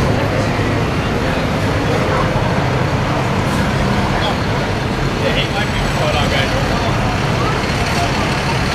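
Steady, loud city street din: traffic noise mixed with background voices, with faint snatches of voices about five seconds in.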